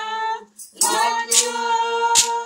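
Church worship singing: several voices holding long notes of a praise song, with a brief break about half a second in. A sharp percussive hit, like a hand clap or tambourine, comes about a second and a half in.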